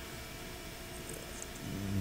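Faint, steady background noise of a machine shop: a low hum and hiss with no distinct events.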